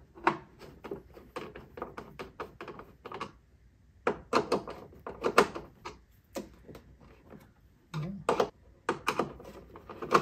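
Hand screwdriver backing Phillips screws out of a Riccar 8900 vacuum's plastic front cover: a run of small, irregular clicks and ticks, with a pause about three seconds in and a few louder knocks between four and five seconds in.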